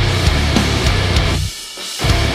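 Hardcore punk band playing a heavy breakdown: distorted guitars, bass and pounding drums. The low end cuts out briefly about three-quarters of the way in, then the band hits again.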